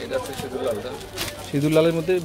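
A man's voice, low-pitched and drawn out, the last second held on long sing-song tones, with a brief rustle of cloth about a second in.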